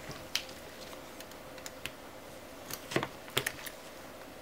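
Small hand tool clicking and tapping against the metal frame of an LCD panel while prying at its edge: a single click early, then a quick cluster of clicks near the end.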